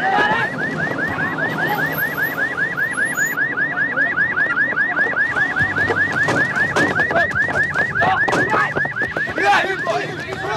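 Police car siren in a fast yelp, its pitch sweeping up and down about five times a second.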